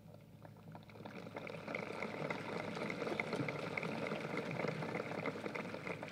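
Audience applause: many hands clapping, building up about a second in and holding steady, easing off near the end.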